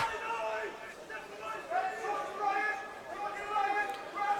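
Faint, distant shouting voices from players and spectators at a football ground, with a few drawn-out calls.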